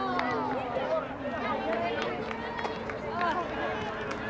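Distant, unintelligible shouts and calls from players and spectators at an outdoor youth soccer game, over a steady low hum.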